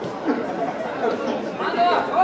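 Several people's voices talking at once in a large echoing hall: indistinct chatter.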